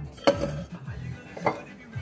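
Glassware knocking on a granite countertop: two sharp clinks about a second apart, the first the louder, as a shot glass and a liquor bottle are handled on the stone counter.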